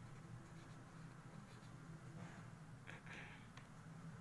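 Faint scratching of a pen writing on notebook paper, in a few short strokes, over a steady low hum.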